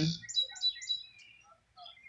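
Small bird chirping: a quick series of short high chirps in the first second, then a few fainter scattered notes.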